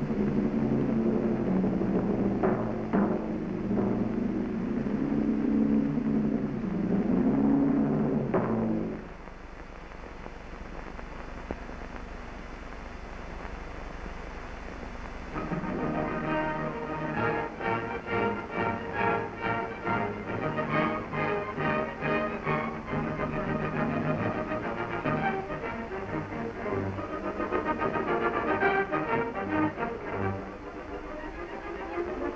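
P-47 Thunderbolt's radial engine droning, rising and falling in pitch, then dropping away about nine seconds in. After a quieter stretch, film music comes in about midway and carries on.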